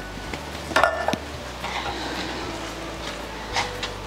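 Hands rubbing a dry seasoning rub into a butterflied leg of lamb on a plastic chopping board, with a sharp knock about a second in.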